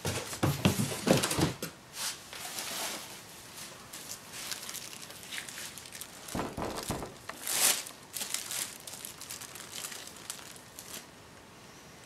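Clear plastic bag crinkling as a wrapped hoverboard is handled and moved, in irregular bursts, with a few dull bumps of the board, the loudest in the first second and a half.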